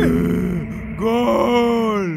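A cartoon giant's deep male voice groaning twice: a short groan at the start, then a longer one about a second in that drops in pitch as it ends.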